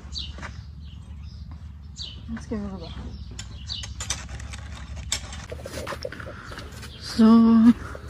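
Handling noise and scattered clicks from a phone camera being carried across a yard, over a steady low rumble. Near the end, a short held vocal sound, briefly the loudest thing.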